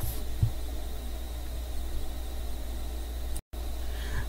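Steady low electrical hum with faint hiss from the recording chain, cut by a brief total dropout about three and a half seconds in.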